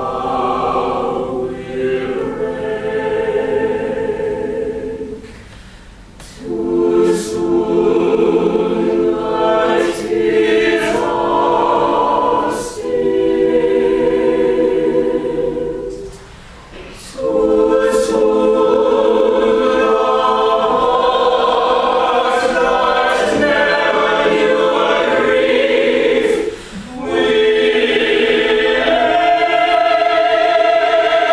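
An opera ensemble singing together in several parts, long held chords with short breaks about six, sixteen and twenty-seven seconds in.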